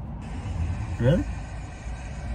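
Steady low rumble of engine and road noise inside a moving motorhome's cab, with one short spoken "really?" about a second in.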